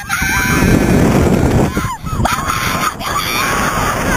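Two women screaming again and again, in long high cries broken by short breaths, as a slingshot ride flings them about. Wind rushes over the microphone underneath.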